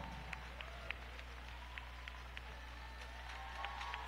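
Faint, scattered applause from an arena crowd, with single claps standing out here and there.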